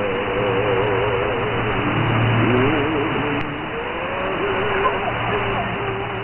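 Shortwave reception at 4055 kHz in upper sideband on a Winradio WR-G31DDC receiver: steady static hiss, cut off above about 3.5 kHz. A weak signal keeps warbling up and down in pitch through it, with a brief click partway through.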